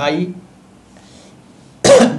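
One sharp, loud cough from a man near the end, after a second or so of quiet room tone.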